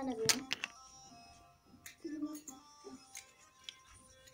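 Scattered light clicks of plastic-coated colored pencils knocking against each other in a pile as they are moved, over faint background music. A voice trails off in the first half-second.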